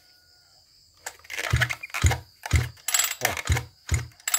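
Mitsubishi TL33 33cc two-stroke brush cutter being pull-started: the recoil starter is yanked and the engine turns over in a run of uneven thumps, about two a second, beginning about a second in.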